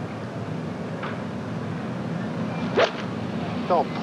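Golf iron shot struck from the fairway: one sharp click of the clubhead hitting the ball about three seconds in, over steady outdoor background noise.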